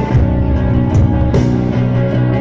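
A post-punk band playing live and loud: electric guitar and bass guitar ringing over a steady beat, with a sharp cymbal-like hit about a second and a half in.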